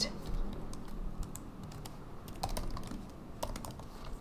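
Typing on a computer keyboard: scattered, irregular keystrokes.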